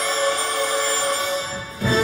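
Orchestral music: a sustained chord that thins out and dips about a second and a half in, then a fuller, louder chord comes in sharply near the end.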